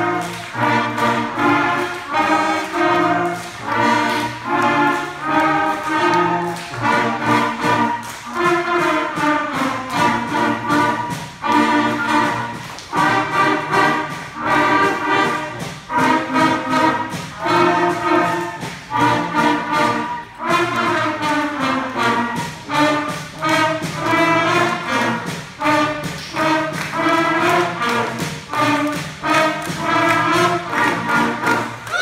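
Elementary school concert band playing a piece: brass, with trumpets to the fore, playing changing chords together over a steady beat.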